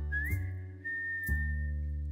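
Background music: a whistled melody slides up into one long held note over plucked-string chords and bass, with the chords struck about once a second.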